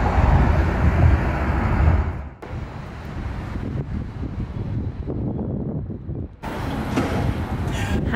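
Low road rumble inside a taxi's cabin for about two seconds, then a sudden drop to a quieter city background hiss, which turns louder and brighter for the last second or so.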